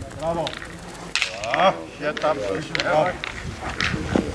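Background voices talking, broken by several short, sharp clicks.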